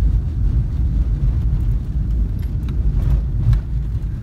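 A car driving, heard from inside the cabin: a steady low rumble of engine and tyres on the road.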